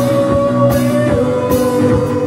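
Live rock band playing: a long held note over a steady drum beat, with cymbal hits about every three-quarters of a second.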